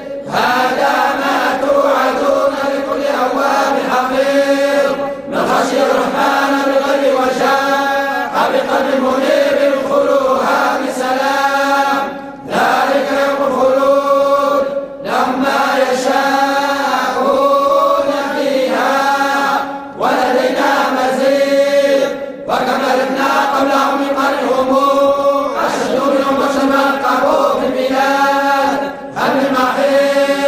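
A group of men reciting the Quran in unison in the Moroccan collective hizb style (tahzzabt). Their voices chant steadily together, with short breaks for breath every few seconds.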